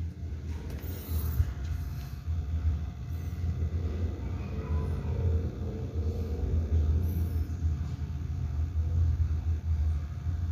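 Low, steady rumble of background noise, wavering slightly in level, with no speech.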